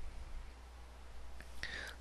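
Faint steady microphone hiss from a voice-over recording, with a short breath near the end.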